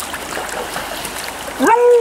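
River water running over a shallow, stony bed with a steady rush. Near the end comes a short, loud, high-pitched voiced cry.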